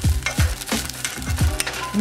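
Rice sizzling as it is stirred and pressed in a saucepan on the stove to crisp it, over background music with a deep, regular beat of about three thumps a second.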